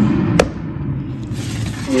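Air fryer oven with its door open: a low hum that drops away about half a second in, with a single sharp click at the same moment.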